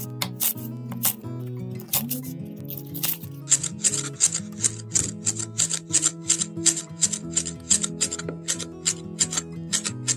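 Chef's knife chopping green onions on a bamboo cutting board: a few spaced cuts, then from about three and a half seconds in a fast, even run of about three to four chops a second. Background music plays throughout.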